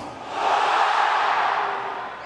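Large arena crowd cheering, swelling about half a second in and easing off near the end.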